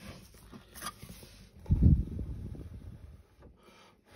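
Handling noise as a painted metal test panel is moved about on a workbench: light rubbing and scraping, with one dull low thump a little under two seconds in.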